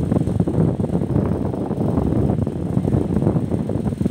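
Loud, gusty low rumble of wind buffeting the microphone.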